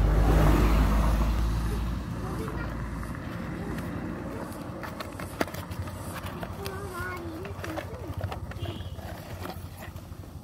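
A cardboard toy box being opened and a plastic toy van drawn out: scattered rustles and sharp clicks. A loud low rumble fades away over the first two to three seconds.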